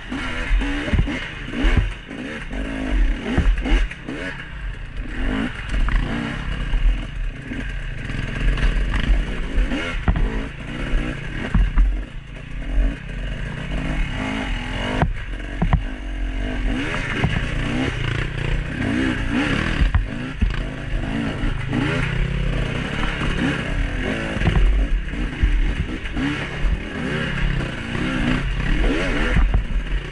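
KTM dirt bike engine revving up and down in short bursts of throttle on a slow, rocky climb, with knocks and clatter from the bike rolling over rocks.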